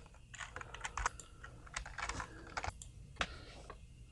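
Computer keyboard typing: soft, irregular key clicks.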